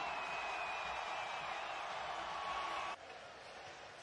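Stadium crowd cheering, with a thin held high note over the roar; the cheering cuts off sharply about three seconds in to a quieter crowd murmur.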